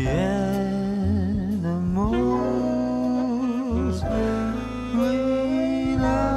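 Jazz ballad played by a small band with piano, double bass and drums: a slow melody line wavers with vibrato over sustained bass notes.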